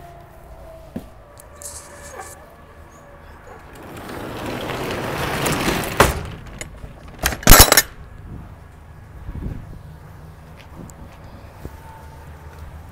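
A delivery truck's metal pull-out walk ramp sliding in its track: a scraping that grows louder over about two seconds, a sharp click, then a short cluster of loud metallic clanks about a second and a half later.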